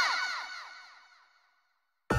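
Magical sparkle sound effect for the transformation brooch flaring: overlapping bell-like tones that swoop up and fall away, fading out over about a second and a half into silence.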